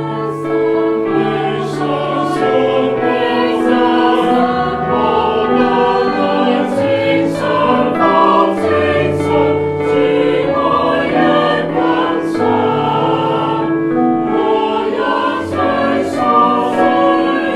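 A small mixed choir of men and women sings in parts, holding sustained chords that change every second or so, with the sung consonants audible.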